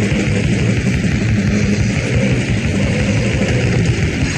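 Raw, heavily distorted hardcore punk recording: a dense, unbroken wall of guitar noise over rapid drumming.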